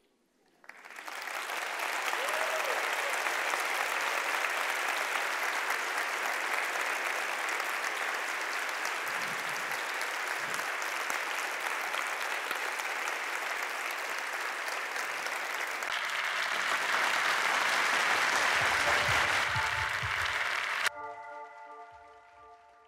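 Audience applauding, swelling in about a second in and carrying on steadily. Near the end, music with a low beat joins, then the applause cuts off abruptly and a short run of held musical tones plays.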